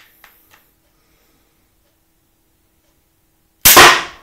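Adderini pistol crossbow shot: a few faint handling clicks, then about three and a half seconds in a single loud, sharp crack of the string releasing, merged with the bolt's thunk into the target.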